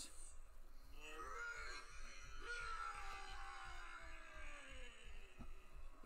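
A faint human voice, drawn out and slowly falling in pitch over several seconds.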